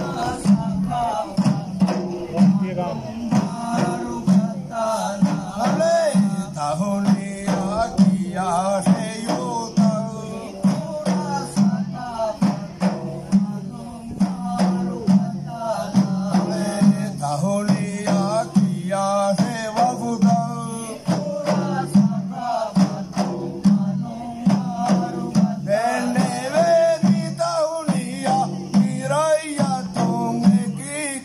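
Group of men singing together to a steady beat on hand-played frame drums, through a PA: a Maldivian thaara performance.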